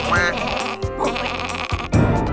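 A quavering, bleat-like animal cry over cartoon background music.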